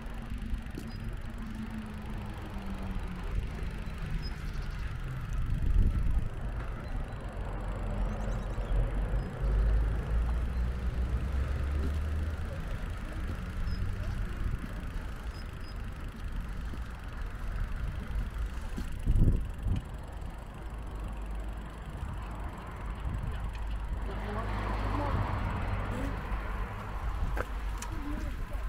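Outdoor street ambience with an uneven low rumble of wind on the camera microphone, swelling and gusting several times. Near the end a vehicle passes, its sound rising and falling.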